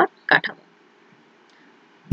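A woman's voice speaks a short syllable or two, then a pause filled only by a faint low background hum.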